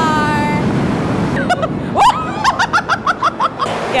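Industrial floor fan blowing hard upward, a steady rush of air buffeting the microphone. A brief held vocal cry at the start and a burst of laughter about two seconds in.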